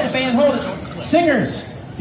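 A voice calling out twice in short vocal whoops that rise and fall in pitch, then a brief lull.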